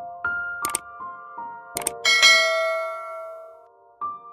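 Soft piano background music, with a subscribe-button sound effect laid over it: two sharp clicks, then a bright bell-like ding about two seconds in that rings out and fades.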